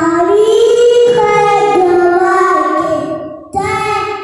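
A young boy singing a devotional song into a microphone, holding long notes with ornamented bends in pitch, pausing briefly for breath about three and a half seconds in before going on.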